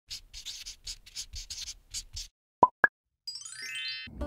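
Intro sound effects: a run of short scratchy strokes at about four a second, then two sharp cartoon plops, the second higher than the first, then a quick rising chime sweep.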